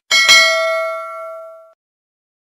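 Notification-bell sound effect: one bright bell ding that rings out and fades away over about a second and a half.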